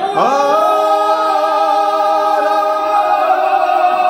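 A group of men singing an unaccompanied Georgian feast song in several voices. They slide up into a chord at the start and hold long notes.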